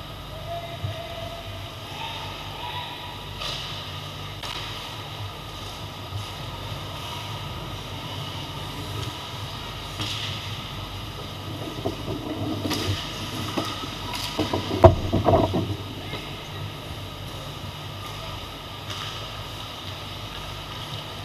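Ice hockey play heard from behind the goal: skates scraping on the ice over a steady low hum, then a flurry of stick and puck clacks past the middle, the loudest a single sharp crack.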